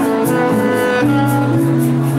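Alto saxophone playing held melody notes over Roland XPS-10 keyboard chords, with a steady light percussion beat ticking about three times a second.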